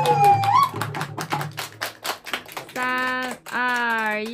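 The last sung note ends with a short upward turn, then two people clap their hands in a quick run of claps lasting about two seconds. Near the end a voice calls out in long, drawn-out syllables.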